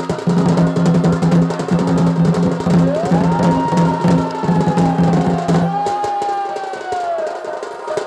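Live Chhau dance music: fast, dense drumming with a steady low drone that drops out a little before six seconds. A long high note joins about three seconds in, sliding up, holding with a slight waver and falling away near the end.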